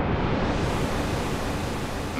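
Synthesized noise sweep at the start of a tech house track: a rushing hiss whose upper range opens until it is at full brightness about half a second in, then holds steady.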